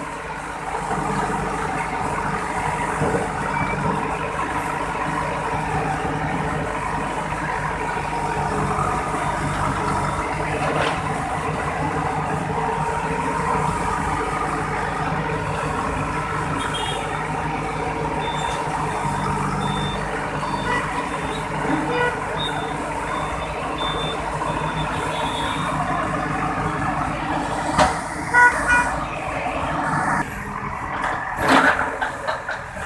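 Diesel engine of a backhoe loader running steadily under load while it demolishes brick walls. A run of short high beeps sounds through the middle of the stretch, and a few sharp knocks come near the end.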